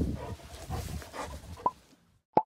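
A dog breathing and snuffling close to the microphone as it jumps about, with irregular rustle from the hand-held microphone.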